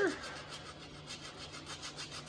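Hand sanding of hardened crack filler on a steering wheel with 60-grit sandpaper on a block: quick, even rasping strokes, several a second, knocking down the high spots of the repair.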